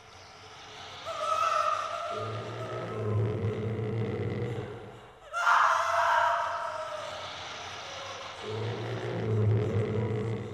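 Haunted-house sound effects from a Halloween effects record: a low rumble that swells up twice, with a sudden loud burst about halfway through that fades over the next few seconds.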